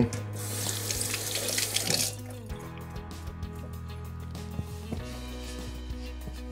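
Kitchen faucet running water into the sink, shut off about two seconds in.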